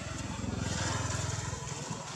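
A small petrol engine running with a fast low pulsing, growing louder toward the middle and dropping away near the end, like a motorbike passing on the road.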